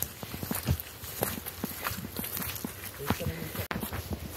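Footsteps of people walking on a wet, muddy forest trail strewn with leaves and roots: an uneven run of soft steps.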